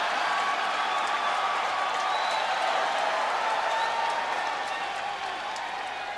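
Large arena crowd applauding and cheering in a steady wash of noise, easing off a little near the end.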